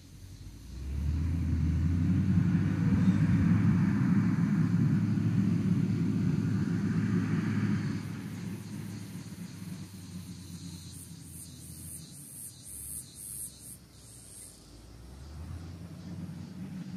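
Caterpillar 120K motor grader's diesel engine working, rising sharply about a second in to a loud, rough rumble, then dropping to a quieter, uneven run about eight seconds in as the machine draws away.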